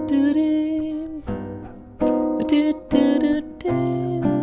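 Jazz guitar playing a G7 augmented (G7♯5) chord that rings for about a second, followed by a short phrase of plucked notes and chords, with fresh notes struck about two, two and a half, three and three and a half seconds in.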